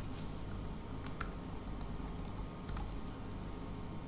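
Typing on a computer keyboard: a short run of scattered keystrokes, most of them between about one and three seconds in, over a steady low hum.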